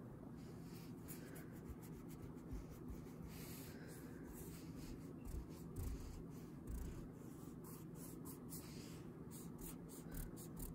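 White block eraser rubbing back and forth over a sketch on drawing paper: a faint run of quick scrubbing strokes starting about a second in.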